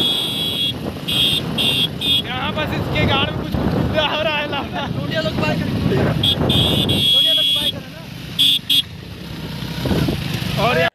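Motorcycle ride with road and wind noise rumbling over the phone microphone. A high steady tone sounds on and off several times, at the start and again near the end. Voices shout and call out in the middle.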